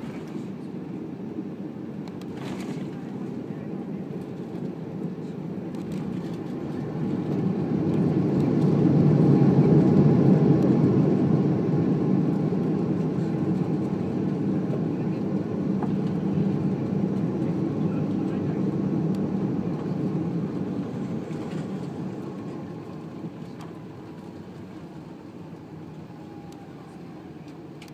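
Airbus A340-600 jet noise heard inside the cabin during the landing rollout: a low rumble that swells to a loud peak about ten seconds in, typical of reverse thrust being applied, then fades as the airliner slows on the runway.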